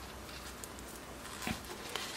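Faint handling noise of a small fabric toiletry pouch being moved and fitted by hand, with a soft tap about a second and a half in and another near the end.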